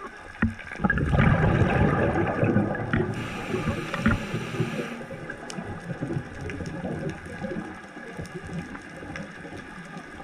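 Scuba diver's exhaled bubbles from the regulator, heard underwater: a loud gurgling rush starting about a second in and tapering off over several seconds, with a higher hiss for a couple of seconds near the middle.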